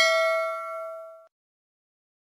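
Notification-bell sound effect: a single bright ding that rings out with several clear tones and fades away, cut off about a second and a quarter in.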